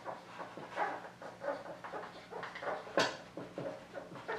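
Dry-erase marker squeaking and scratching across a whiteboard in short, irregular strokes as words are written, with one sharper tap about three seconds in.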